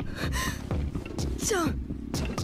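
Soundtrack of the subtitled anime episode: a sustained background score under a young character's voice speaking Japanese, the voice rising and falling about one and a half seconds in.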